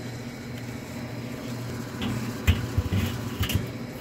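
A steady low hum, then several short knocks and low thumps in the second half as the lid of a Weber Smokey Mountain smoker is handled and set back on.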